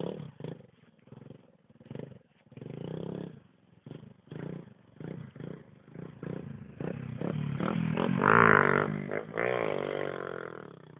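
Small motorcycle engine revving up and down in pitch as it is ridden on dirt, growing louder in the second half and loudest about eight seconds in.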